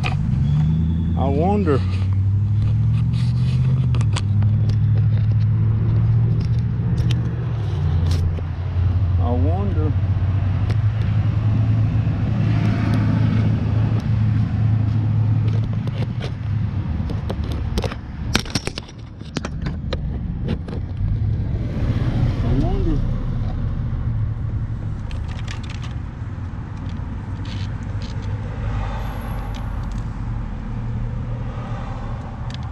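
Mobility scooter's electric drive motor running with a low hum that steps up and down in pitch, over scattered scrapes and knocks; the hum dips briefly about eighteen seconds in.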